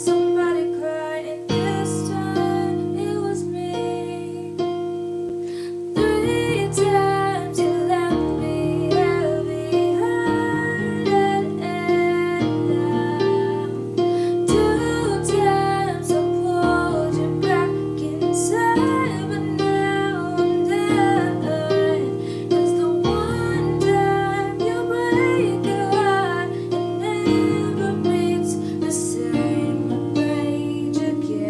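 A girl singing a slow, sad original song, accompanying herself on an electronic keyboard with a piano sound. Held chords change about every two seconds under her voice.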